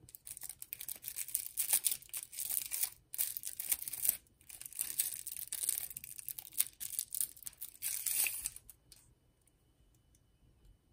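A plastic wrapper being crinkled and torn open to free a stirring straw: an irregular run of crackles and rips that stops about nine seconds in.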